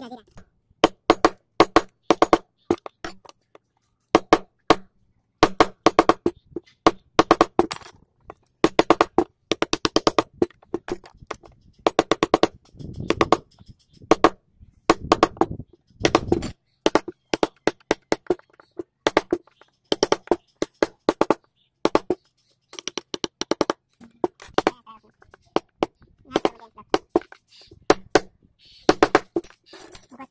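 Carving chisels being struck into a wooden door panel, a rapid series of sharp taps in bursts of several a second with short pauses between.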